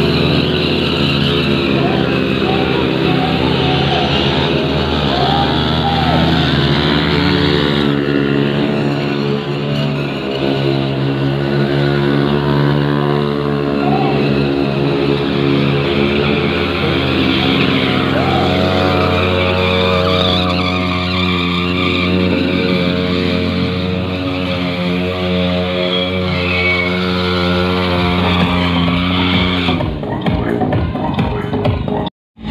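Several motorcycle engines running and revving during stunt riding, mixed with loud music playing throughout.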